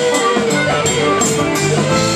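Live rock band playing, with electric guitar and drum kit, cymbals ticking steadily over sustained guitar notes.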